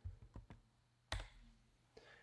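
A few faint clicks from a computer keyboard and mouse, the sharpest one about a second in.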